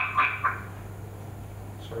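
A man's voice in the first half-second and again briefly at the very end, over a steady low electrical hum.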